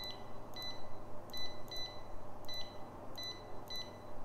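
Short, high electronic beeps repeating at an uneven pace, sometimes two or three close together, over a faint steady low hum.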